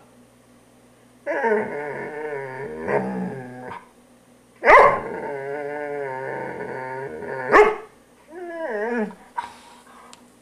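Black poodle growling and barking as it bites at a grooming brush. There are two long wavering growls of about two to three seconds each, with sharp barks at the start of the second and at its end, then a shorter whining growl near the end.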